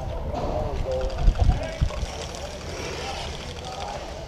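Faint distant voices talking, with a couple of low thumps from gear being handled about a second and a half in.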